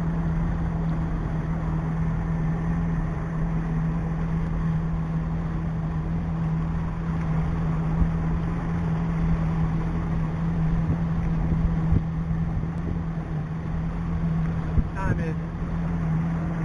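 A small boat's motor running at a steady pace while the boat cruises, a constant low hum over the rush of water and wind.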